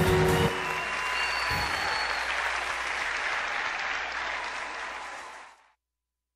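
Theatre audience applauding and cheering after music stops about half a second in. The applause fades out shortly before the end.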